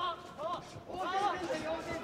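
Speech only: voices speaking or calling out in short phrases over the arena background.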